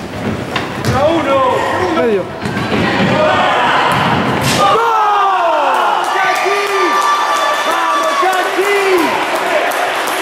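Live sound of a futsal game in an echoing indoor hall: voices shouting and calling out, with several sharp thuds of the ball being kicked and striking the floor or walls in the first half.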